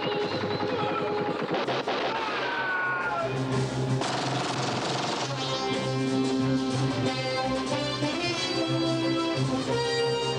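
Rapid automatic-weapon fire in bursts over film-score music for about the first two seconds, then the music carries on alone with long held notes.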